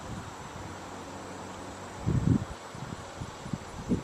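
Faint, steady indoor background hiss, with a short low bump about two seconds in and two small low knocks near the end.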